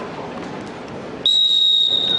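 Referee's whistle: one long, steady, high-pitched blast starting a little past the middle, signalling the start of the wrestling bout.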